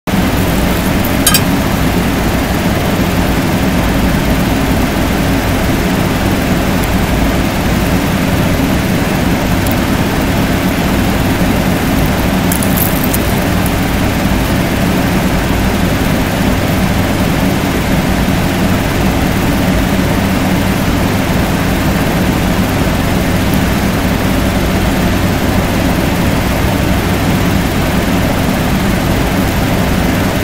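Steady mechanical hum with hiss, unchanging throughout, with two brief faint clicks, about a second in and a little before halfway.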